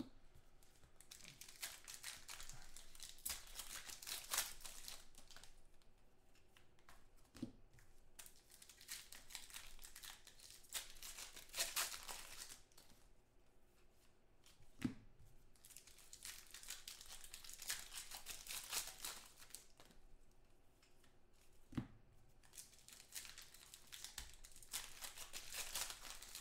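Foil wrappers of 2014 Panini Contenders football card packs being torn open and crinkled by hand, in several bursts a few seconds apart. A few light, sharp knocks fall between the bursts.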